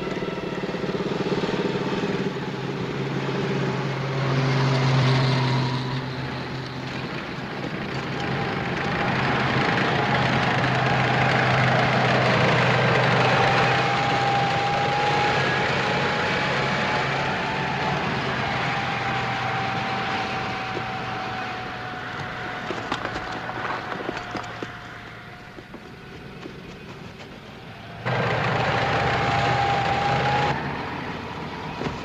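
Truck engines running as motor vehicles drive past, a steady hum with a thin whine over it. The sound falls away for a few seconds and comes back abruptly near the end.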